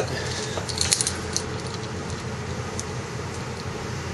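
A few light clicks and rustles from the cut carbon fiber seatpost section being picked up and handled, about a second in, over a steady low hum.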